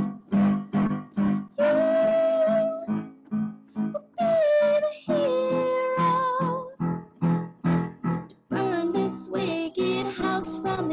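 A woman singing while accompanying herself on a Yamaha electric keyboard: long held sung notes over a steady pulse of repeated chords.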